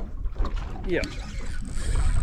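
Steady low rumble of wind on the microphone aboard a small boat on open water, with a man's short "yeah" about a second in.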